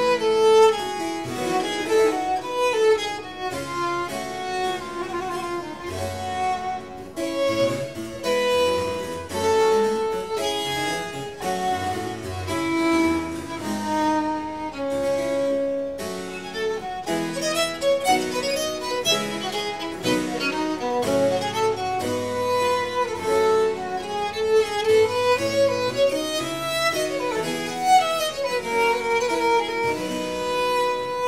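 Baroque violin strung with gut and a harpsichord playing together: the violin carries a melody of held notes and quick runs over the harpsichord's accompaniment.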